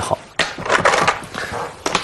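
Go stones being clacked and slid into place on a wall demonstration board: a sharp knock about half a second in and another near the end, with scraping in between.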